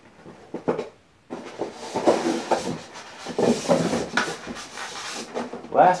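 Styrofoam packing insert scraping and rubbing against a cardboard box as it is pulled out, a continuous scuffing from about a second in, after a few light knocks.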